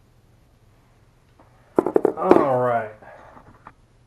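A man's short wordless vocal sound, falling in pitch, a little before the middle, just after a few sharp clicks; a single soft click follows near the end.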